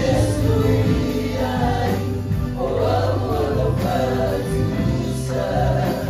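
A worship team of mixed male and female singers singing together in Samoan, amplified through microphones, over a live band accompaniment with steady low bass notes.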